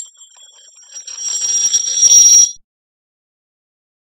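High metallic ringing and rattling, like a small metal ring spinning on a hard floor. It swells to its loudest about two seconds in and cuts off suddenly just after.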